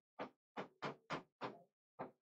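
A pen or stylus tapping on the glass of an interactive display while writing. It gives a quick run of faint short taps, about three a second, pauses, then taps once more near the end.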